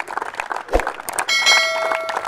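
Scattered clapping, then, a little over a second in, a bright bell-like chime that rings steadily for about a second and is the loudest sound.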